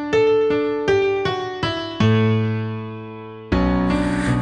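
Digital piano playing an instrumental passage: a run of single notes struck a little under three a second, then a low chord held and left to fade, and a new chord struck near the end.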